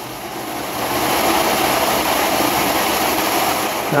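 Large pulse motor running, its big drum rotor spinning with a steady rushing whir that grows louder over the first second and then holds.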